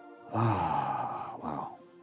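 A man's long voiced sigh into a handheld microphone, followed by a shorter second one, over soft, steadily held music chords.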